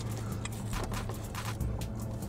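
Music playing at a moderate level over a steady low hum, with a few soft clicks.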